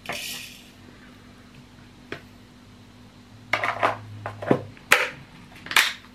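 A metal spoon scraping and tapping against a plastic tub and the food processor bowl as ground coriander is spooned in. A brief scrape comes at the start, then scattered sharp clicks and taps, with a cluster a little past halfway and two louder taps near the end.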